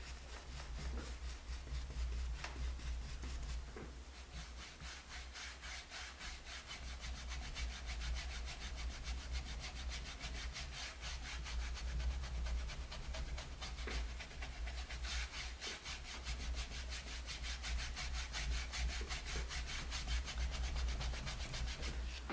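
A nearly dry paintbrush scrubbed in quick, round scumbling strokes across a painted wooden board, a steady rhythmic bristle scratching of several strokes a second.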